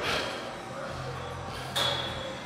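An iron weight plate on a plate-loaded chest press machine being handled, giving two short metallic scrapes with a slight ring: one at the start and one near the end. Faint background music runs underneath.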